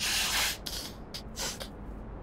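A woman blowing her nose into a tissue: one long blow of about half a second, then several shorter blows.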